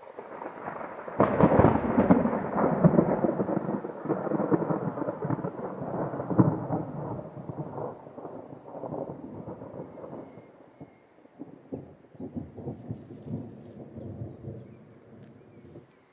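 Rolling thunder: a rumble that builds, breaks into a loud crack about a second in, then rolls on in surges and fades over the next several seconds. A second, quieter spell of rumbling follows near the end and cuts off suddenly.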